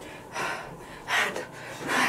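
A woman's two sharp, breathy gasps about a second apart, drawing air in and out through a mouth burning from a scotch bonnet pepper.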